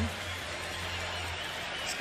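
Basketball arena game sound during a pause in the TV commentary: a steady low hum under a faint even background noise, with no distinct bounces or shouts standing out.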